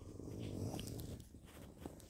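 A Bible page being turned while the phone is moved over the book: a soft, low rustle for about a second and a half that fades out.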